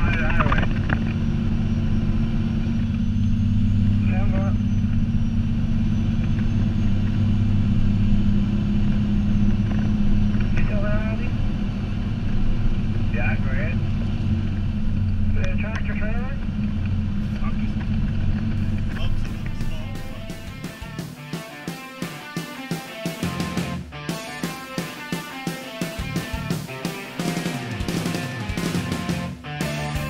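Heavy tandem-axle plow truck's diesel engine droning steadily, heard from inside the cab, with a few brief snatches of voice. About two-thirds of the way through, the engine sound gives way to rhythmic background music.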